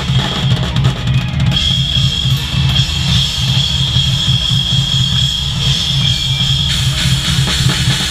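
Live rock band heard from a camera over the drum kit, with the drums loudest: a fast, steady bass-drum pulse under the band. Sharp snare and cymbal hits come at the start and again near the end, with a held high note in between.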